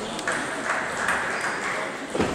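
Table tennis balls clicking off tables and bats at the neighbouring tables of a busy sports hall, several irregular clicks over a background murmur of voices.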